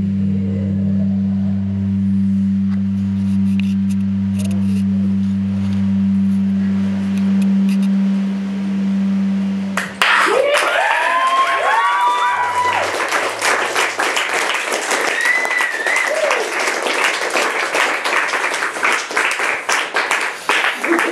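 A steady low droning note from the band is held and cuts off about halfway through. The audience then breaks into clapping and cheering, with several rising whoops.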